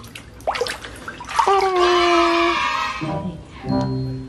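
Water sloshing in a plastic basin as a hand swishes a toy through it to wash it, then a held musical tone lasting about a second, the loudest sound, starting about a second and a half in.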